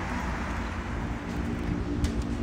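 City street traffic: a steady low rumble of car engines and tyres, with a car engine's even hum coming in close by near the end.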